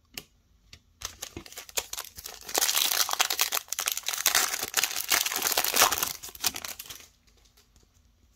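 Foil trading-card pack wrapper being torn open and crinkled by hand. A dense crackling starts about a second in, is loudest in the middle and stops about a second before the end, after a single click near the start.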